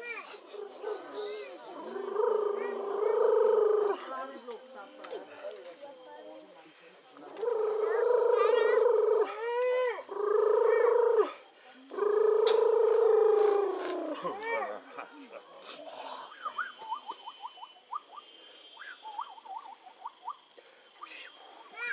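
A voice chanting long, steady held tones in four phrases of one to three seconds each, each phrase sliding down in pitch as it ends. Short rising chirps fill the pauses and grow thicker near the end.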